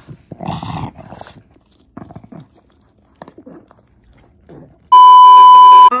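A pug makes a short noisy grunt close to the microphone, then softer, scattered snuffling sounds. About five seconds in, a loud steady beep tone lasts about a second and cuts off.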